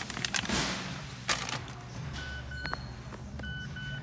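Clicks and rustling as someone moves into the driver's seat. From about halfway through, the car's electronic warning chime sounds in short, repeated beeps over a low steady hum.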